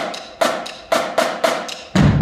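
Marching drumline playing: about six sharp, ringing strokes in a sparse, syncopated pattern, with no deep drum under them. Right at the end the bass drums and full line come in together, loud and low.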